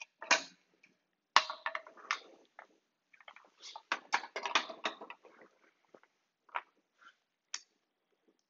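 Small metal hardware and hand tools being handled: scattered short clicks and knocks, with a quicker run of clicks about four to five seconds in.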